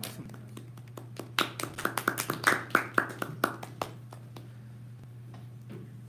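A small group clapping for about three seconds, a few voices mixed in, over a steady low electrical hum.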